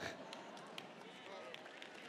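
Faint audience laughter and murmuring, with a few scattered claps.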